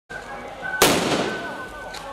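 Firecrackers exploding in the street: a loud burst about a second in that trails off into fading crackle, then a smaller crack near the end.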